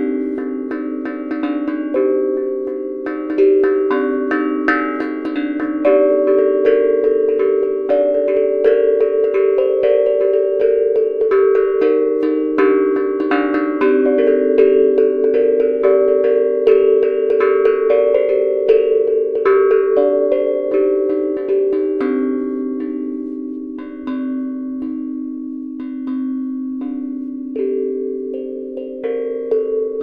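A handmade steel tank drum (tongue drum) played melodically, with a quick run of struck tongues whose notes ring on and overlap. It gets somewhat softer in the last third.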